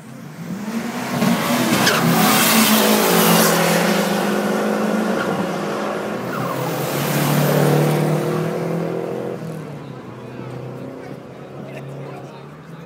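Two Renault 5 GT Turbo cars with turbocharged four-cylinder engines driving close past one after the other. The first is loudest about two and a half seconds in and the second near eight seconds, then the sound fades away.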